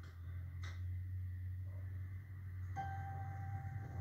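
A steady low hum, then about three-quarters of the way in a single clear chime-like tone starts and holds. It is a musical cue on the programme's soundtrack, heard through a TV speaker.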